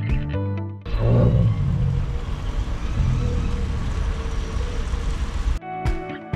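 Acoustic guitar background music breaks off just under a second in. About five seconds of live outdoor sound follow, an even noise with a heavy low rumble, then the guitar music returns near the end.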